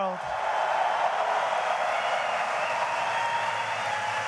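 Large audience applauding and cheering, a steady wash of clapping and voices that begins as the speaker stops and holds at an even level throughout.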